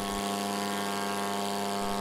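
RQ-23A TigerShark drone's small piston engine and pusher propeller running at takeoff power during its takeoff roll: a steady buzz that holds one pitch.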